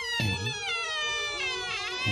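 A long high-pitched wail that slides slowly downward in pitch and wavers near the end, over background music.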